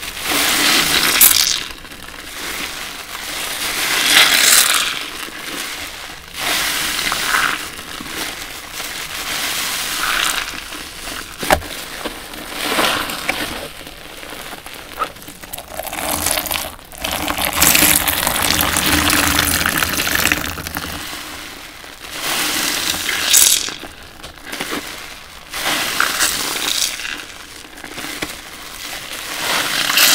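Large foam sponges soaked in soapy detergent water squeezed and kneaded by hand, over and over: irregular wet squelches, each a second or two long, with water and suds splashing back into the basin.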